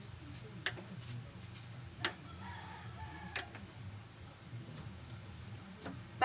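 A few light clicks and knocks as an aluminium llanera is handled and set down on a gas stove, the sharpest about two seconds in. A faint rooster crow sounds in the background for about a second, starting around two and a half seconds in.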